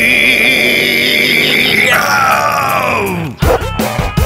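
A man's long drawn-out yell of fright with a wavering pitch, held over music. About two seconds in it slides down in pitch and fades away, and the music's beat comes back in near the end.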